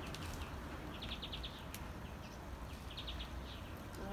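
A small bird's short, rapid chirping trill, heard twice, over a steady low outdoor rumble.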